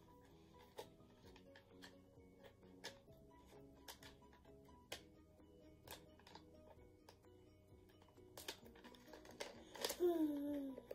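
Faint background music with soft, sustained notes, under scattered small clicks and rustles of sticker sheets being handled.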